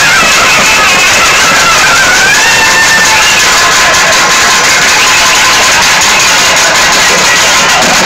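Loud live folk music: a shrill reed pipe playing a wavering, sliding melody over continuous drumming.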